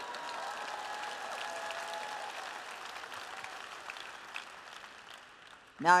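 Live audience applauding, with a voice or two calling out in the first couple of seconds; the applause fades away toward the end.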